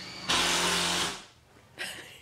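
Power drill running off-camera in one steady burst of about a second that starts sharply, then winds down.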